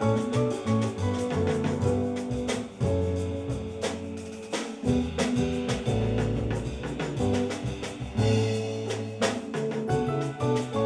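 Latin jazz band playing an instrumental passage live, with upright bass notes under a steady drum and percussion groove and pitched instruments above.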